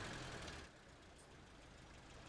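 Faint, steady low rumble of a car running. It drops to a quieter background about two-thirds of a second in.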